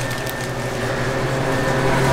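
Steady low machine hum with a faint, steady high whine above it.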